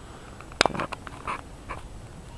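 A sharp click about half a second in, followed by a few faint short sounds.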